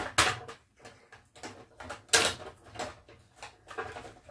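Objects handled on a tabletop: two sharp clacks, one just after the start and one about two seconds in, with lighter clicks and rustling between.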